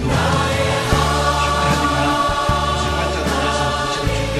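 Amplified singing: a man's voice through a handheld microphone, joined by other voices, over steady musical accompaniment with long held notes.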